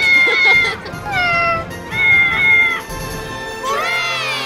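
Cartoon kittens meowing: a series of short meows, several falling in pitch and one rising near the end, over background music.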